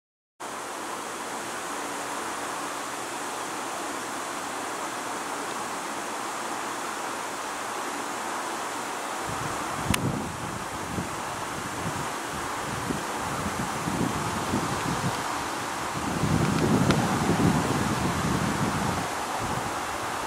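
Steady outdoor hiss with wind buffeting the microphone, gusting from about halfway and strongest near the end, and a sharp click about halfway through. A brief dropout comes at the very start.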